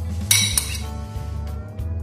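A metal spoon clinks against a glass bowl, sharply once about a third of a second in, as chopped onion is scooped out, over steady background music.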